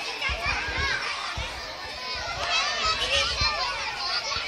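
Several children's voices shouting and chattering over one another at play, busiest near the end, with occasional dull low thumps underneath.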